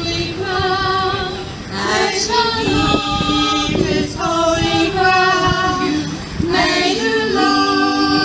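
A women's choir singing a cappella in several-part harmony, holding long notes in phrases, with short breaks about two seconds in and again about six and a half seconds in.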